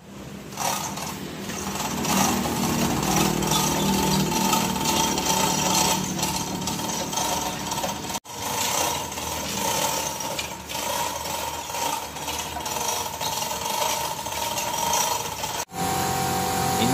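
Manual chain hoist being hauled, its chain rattling and clicking continuously with metal clinking, as an engine block is lifted, over a faint steady hum. The noise breaks off briefly about halfway and again near the end.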